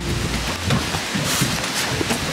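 Steady rushing noise of wind and rain on the microphone, with low rumbles. A horse's hooves clomp a few times on the rubber-matted ramp of a horsebox as it walks in.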